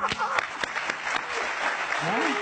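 Studio audience applauding, an even clatter of many hands, with the tail of a voice at the very start.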